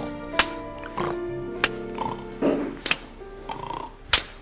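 Background music with held notes, cut by three sharp slaps about a second and a quarter apart: a hand smacking a sleeping man's face to wake him.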